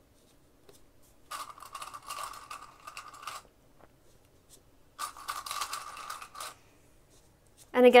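Plastic Wonder Clips and fabric being handled as the clips are put onto a zipper panel. The rustling and clicking come in two bursts, about two seconds and a second and a half long.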